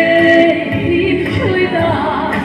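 A woman singing a gospel praise song into a microphone. She holds a long note, then her melody steps down in pitch about one and a half seconds in.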